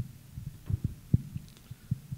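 Handling noise from a handheld microphone being passed between people and gripped: a scatter of short, dull, low thumps.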